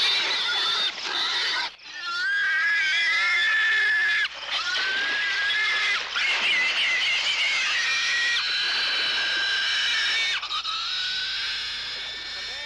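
A herd of domestic pigs squealing, high-pitched and wavering, with a brief break just before two seconds in and short dips about four and six seconds in.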